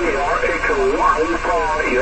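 Speech received on a 6-metre (50 MHz) amateur radio transceiver in upper-sideband mode, heard through the radio's speaker: a thin, narrow voice cut off above the low treble, with steady hiss behind it.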